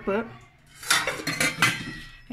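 Stainless steel pots and lids clattering as they are handled, a quick run of metallic clinks with a faint ring about a second in.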